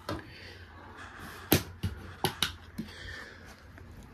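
A series of sharp clicks and light knocks, about six, the loudest about a second and a half in, from the exterior storage compartment door of a travel trailer and its latch being handled.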